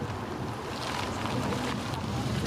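A car approaching slowly on an asphalt road: steady engine and tyre noise, with wind buffeting the microphone.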